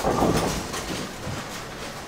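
Ten-pin bowling pinsetter machinery running in the machine room behind several lanes: a loud clattering crash right at the start, then steady mechanical rattling and rumbling.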